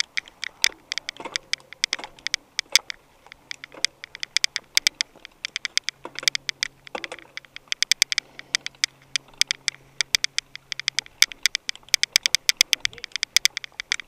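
Mountain bike rattling over a rough dirt trail: a dense, irregular run of sharp clicks and knocks from the bike and the camera's mount, with a faint steady hum underneath.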